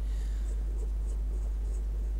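Drawing compass's pencil point scratching faintly on paper in a few soft strokes as it is swung round an arc, over a steady low hum.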